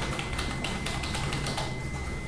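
Quick irregular clicks and taps, much like typing on a keyboard, over a faint steady high tone.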